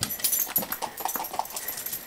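Quick, irregular taps of a small dog's claws on a hard floor as it trots along, mixed with the footsteps of a person following.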